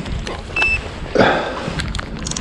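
Rain and wind buffeting a GoPro microphone, with rustling as a hand handles the fishing rods and reel. A single short high beep comes about half a second in.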